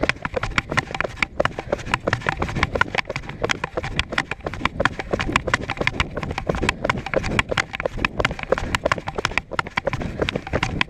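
Two people running in rubber boots on asphalt: quick, uneven footfalls, several a second, their strides overlapping.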